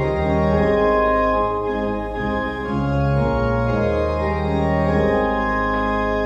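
Church organ playing a hymn in slow, held chords that change about once a second.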